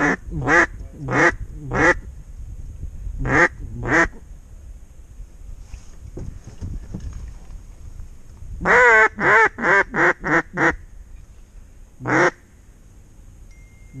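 Mallard hen quacks blown on a duck call: four single quacks, two more, then a fast run of about six quacks about nine seconds in, the first one long, and one last quack near the end. This is calling to mallards circling back toward the decoys.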